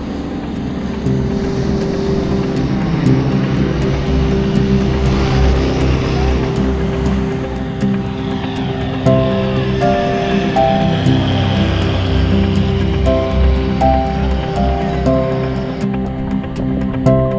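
A light propeller plane flying low overhead, its engine growing louder and then fading, under background music with a steady beat; a melody comes in about halfway through.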